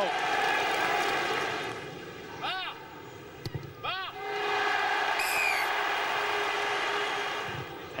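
Rugby stadium crowd noise: a large crowd cheering and shouting, dropping away for a couple of seconds, with two short shouted calls, then swelling again.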